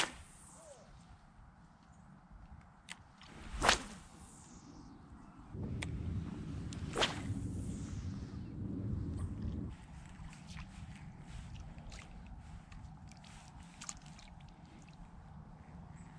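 A baitcasting fishing rod swished through the air in a cast: one sharp whoosh about four seconds in and a second swish near seven seconds. A steady low rustle of line and reel runs from about five and a half to ten seconds.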